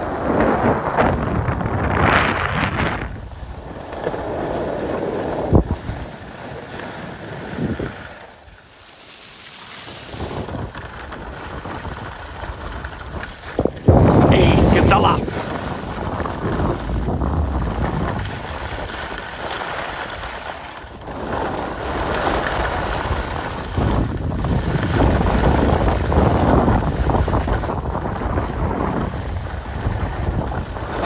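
Wind buffeting the phone's microphone while skiing downhill, a rough, rumbling rush with the hiss of skis on packed snow. It fades briefly about eight seconds in and surges loudest around fourteen seconds.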